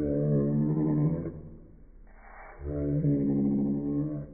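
Slowed-down human voice, deep and drawn out like a roar: two long, low vocal sounds, each lasting about a second and a half.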